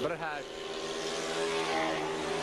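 Speedway motorcycles, 500 cc single-cylinder Jawas, running hard round the track with a steady buzzing drone, their pitch edging up in the second half.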